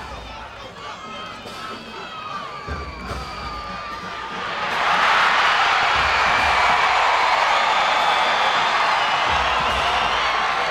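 Football stadium crowd shouting, then about five seconds in a loud, sustained roar of cheering breaks out as the play develops.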